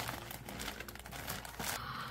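Packaging crinkling and rustling irregularly as it is handled and opened by hand.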